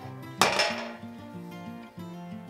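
A single sharp metallic clank about half a second in from the metal parts of an old beam balance scale as its sliding weight is moved, ringing out briefly. Acoustic guitar background music plays throughout.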